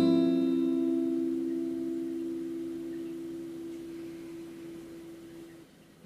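Acoustic guitar chord struck right at the start and left to ring, dying away slowly over about five seconds until it has almost faded out near the end.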